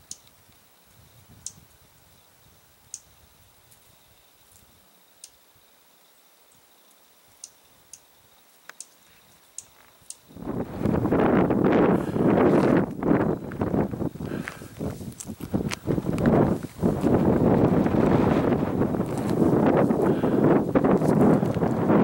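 A small songbird gives short, high, thin chirps about one every second or two over a quiet background. About ten seconds in, loud gusting wind buffets the microphone on the exposed summit and covers everything else.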